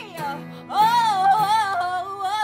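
A woman singing with strummed acoustic guitar accompaniment: a note glides down, the voice dips briefly, then a long held, wavering note follows about three-quarters of a second in.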